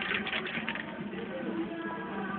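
Aerosol spray paint can hissing in short bursts during the first part, over background music and voices.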